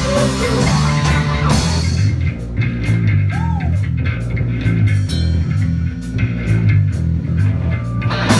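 Live rock band playing: electric guitars, bass guitar and drums. About two seconds in the guitars drop back, and the bass guitar and the drum hits carry the song, loud and steady.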